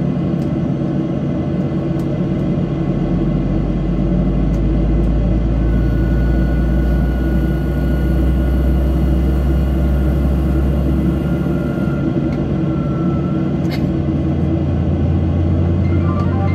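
Airliner's jet engines running at ground idle, heard inside the cabin as a steady hum with a low rumble that swells a few seconds in and shifts near the end, while the aircraft waits before its takeoff roll.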